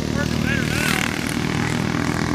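Racing kart engines running steadily in the distance as the field laps the circuit, heard as a steady hum of several engine pitches.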